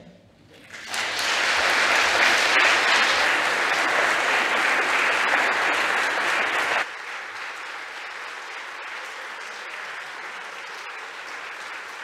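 Congregation applauding, starting about a second in; about seven seconds in it drops suddenly to a quieter level and carries on.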